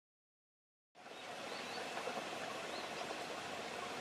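Dead silence for about a second, then steady outdoor background noise, a soft even hiss, with two faint high chirps.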